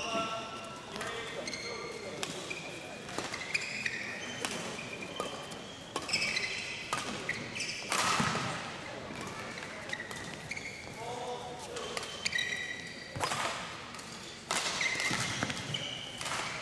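Badminton singles rally: rackets strike the shuttlecock with sharp cracks, and court shoes squeak briefly and often on the court mat. The loudest hit, about halfway through, is an overhead jump smash.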